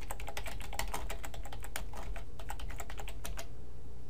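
Typing on a computer keyboard: a quick run of keystrokes that stops about three-quarters of the way through.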